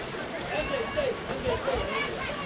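Several people shouting and calling out indistinctly, their voices overlapping.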